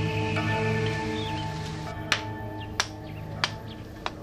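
Soft background music fades out, then sharp wooden knocks come about every two thirds of a second as a blade chops at bamboo sticks, with faint bird chirps.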